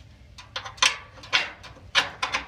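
Sharp metal clinks of a steel ring pin and its chain against a utility trailer's steel ramp latch as the pin is worked into place: a few clinks about half a second apart in the second half.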